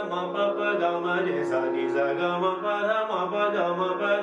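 A man singing a sliding, ornamented melodic line in Raag Bhairav, accompanied by a Bina harmonium holding steady notes underneath.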